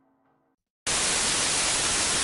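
A music track fades out and there is a moment of silence. Then, just under a second in, a loud burst of TV-static hiss cuts in suddenly and holds steady.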